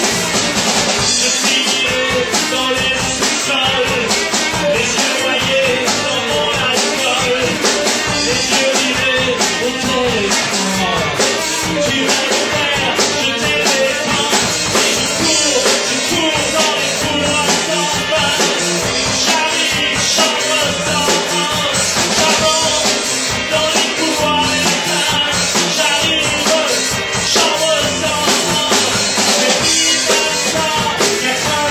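Live rock band playing: a drum kit keeping a steady beat under electric guitars and keyboard, with a lead vocal over the top.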